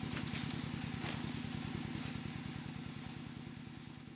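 A small engine running steadily at idle, a low, fast, even chugging that fades out over the second half.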